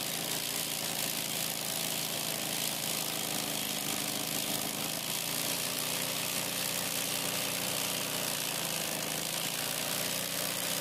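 Electric embroidery sewing machine running steadily, its needle stitching a design into sheer fabric.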